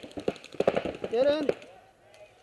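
Paintball markers firing quick strings of shots, several pops a second, which stop about a second and a half in.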